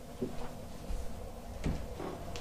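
Soft footsteps on a carpeted floor: a few muffled thuds about half a second apart, over faint room hum.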